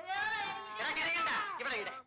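A child crying and wailing: two long, high-pitched cries that bend in pitch, with no words.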